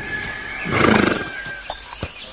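A horse whinnying once, a pulsing call of about half a second that is loudest around the middle.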